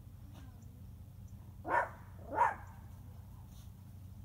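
A dog barking twice, two short barks about two-thirds of a second apart, over a steady low background hum.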